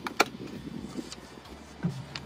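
Ignition key of an electric golf cart being turned in its dash switch: one sharp click just after the start, then a low steady background as the cart powers up.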